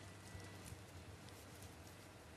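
Near silence: a faint low hum with soft, irregular handling knocks from a handheld reporter's microphone being moved about.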